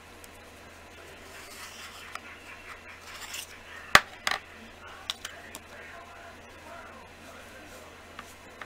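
Small hard objects being handled on a work surface: one sharp click about four seconds in, a second soon after, then a few lighter clicks.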